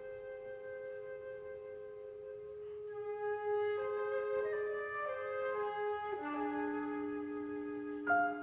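Flute and clarinet playing a duet. Two long held notes open it. From about three seconds in the lines move through shifting notes, and a low note is held beneath them from about six seconds in.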